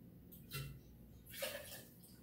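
Quiet bar-tool handling: a short knock of the glass bottle against the metal jigger or counter about half a second in. Then sweet vermouth is tipped from the jigger into a metal shaker tin in a brief pour lasting a little under a second.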